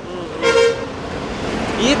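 A vehicle horn gives one short toot about half a second in, over steady road traffic noise.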